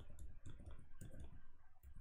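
Faint, irregular clicks of computer keys being pressed repeatedly, a few each second.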